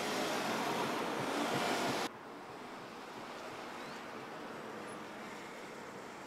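Steady outdoor rush of wind and ambient noise, louder for about two seconds, then dropping suddenly to a quieter hiss.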